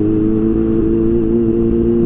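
A Kawasaki Ninja H2's supercharged inline-four running at a steady engine speed while the bike is ridden, heard from on board.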